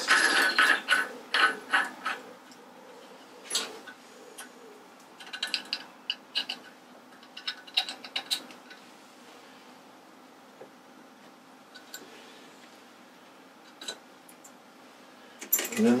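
Metal clinks and clicks from a steel nut being threaded onto a spindle by hand and tightened with drill bits set in its holes. There is a close run of clinks in the first couple of seconds, then sparse, scattered taps.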